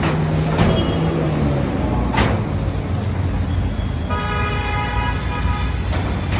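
Sheet-steel almirah being handled: its drawer pushed shut and its door latch and handle worked, giving a few sharp metal clicks and knocks, the loudest about two seconds in. Under them runs a steady low rumble, and from about four seconds a steady pitched tone is held.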